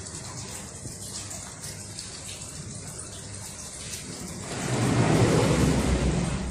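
Harbour water lapping against a concrete quay wall, a steady wash that swells into a louder slosh about four and a half seconds in.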